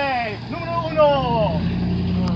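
A motor vehicle's engine hum, steady and low, that comes in about half a second in and grows louder near the end, with a voice exclaiming over it.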